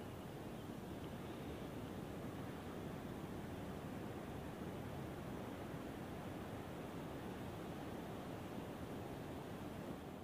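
Faint, steady outdoor ambient hiss with no distinct events, even throughout.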